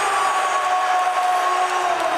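Arena goal horn sounding one long steady note over crowd noise after a goal, its pitch starting to sag near the end as it winds down.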